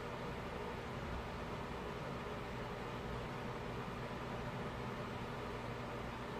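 Steady background hiss of room noise with a faint low hum, unchanging throughout; no distinct events.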